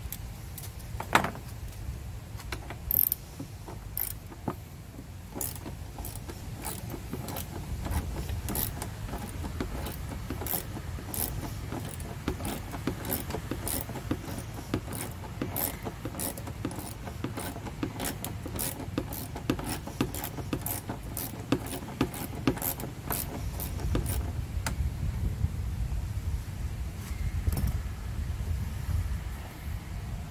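Ratchet wrench clicking in irregular runs of short sharp ticks while loosening a fuel-tank mounting bolt, with a low steady rumble underneath.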